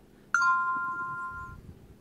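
An iPhone 5s notification chime: one ding of two tones sounding together, ringing for about a second and fading. It announces a push alert from a package-tracking app with a delivery update.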